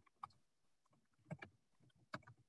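Faint strokes of a flat paintbrush spreading dark blue paint across a stretched canvas: a short stroke about a quarter second in and a few quick strokes past halfway.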